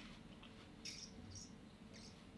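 Near silence: quiet room tone with a faint steady hum, broken about a second in by two brief, faint high chirps.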